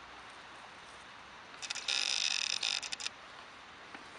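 Camera lens autofocus motor of a Nikkor 18-105 VR whirring as it refocuses, picked up close by the camera's built-in microphone: a few stuttering starts about one and a half seconds in, then a high buzz for about a second that cuts off suddenly.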